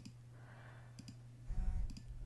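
Two computer mouse clicks about a second apart, over a faint steady low hum.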